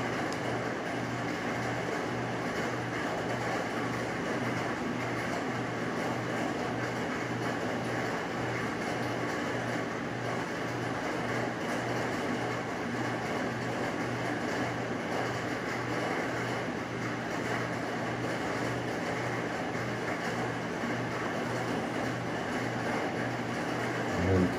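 Steady rain on a tin roof, an even hiss that holds level throughout, with a low pulse repeating about twice a second underneath.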